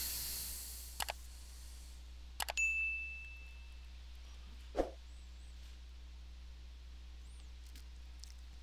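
Like-and-subscribe overlay sound effects: a swish, a couple of mouse clicks, then a bell-like ding about two and a half seconds in that rings out for over a second, and a soft pop near five seconds. A low hum sits underneath.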